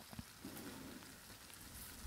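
Near silence: a faint steady hiss with a couple of faint ticks at the start.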